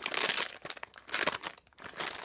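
Crinkly packaging being handled as a squishy toy is brought out, a dense crackling rustle that dies away about one and a half seconds in.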